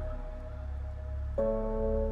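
Slow ambient meditation music: sustained bell-like chords held over a low steady drone, with a new chord striking about a second and a half in and ringing on.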